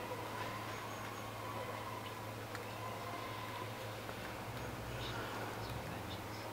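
Faint handling sounds of a die-cast 1/50 scale Schwing S36 SX concrete pump model as its boom sections are unfolded by hand: a few light clicks, the first about halfway in and two near the end, over a steady low electrical hum.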